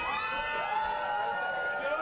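A person in a crowd calling out in one long, high, held cry, over the chatter of other voices.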